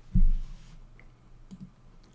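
A low thump just after the start, then a few faint clicks about a second and a half in, from a computer mouse being clicked.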